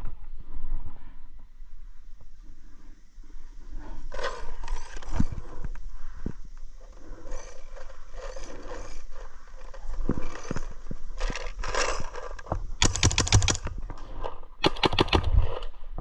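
Paintball markers firing, with two strings of rapid pops near the end, over scraping and rustling of gear against the bunker.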